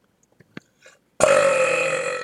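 A man's loud, drawn-out burp that starts abruptly just over a second in and lasts about a second, brought up by fizzy seltzer water.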